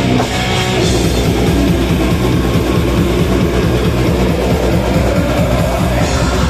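Death metal band playing live: distorted electric guitars and bass over fast drumming on a drum kit, loud and continuous.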